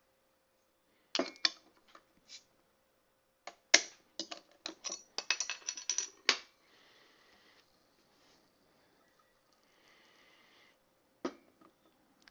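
A metal bottle opener clicking and scraping against the crown cap of a glass soda bottle as the cap is pried off, with a quick run of sharp clicks in the middle. This is followed by two brief, faint hisses and a single click near the end.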